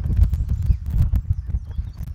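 Wind buffeting an outdoor microphone: an uneven, gusting low rumble with scattered small knocks.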